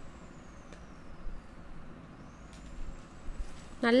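Steel spoon stirring a thick milky payasam in a steel pot, with a couple of faint clicks of the spoon against the pot. A faint high whine slides down in pitch and then climbs back up.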